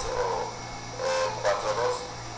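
A man talking into a studio microphone, with a steady low hum underneath.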